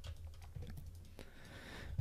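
Faint, scattered clicks of a computer keyboard and mouse being worked, a few clicks a second.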